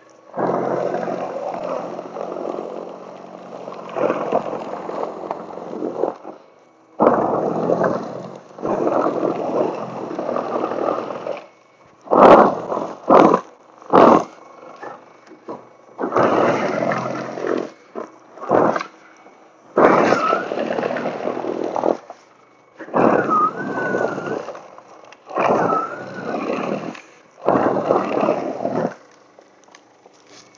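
Toro Power Clear e21 60-volt battery snow blower running in repeated spurts of one to three seconds, with short quiet gaps between them and a brief wavering whine in a few of the spurts.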